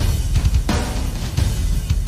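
Orchestral anime soundtrack ending on big drum-kit toms with a bunch of reverb on them, struck about once every 0.7 s.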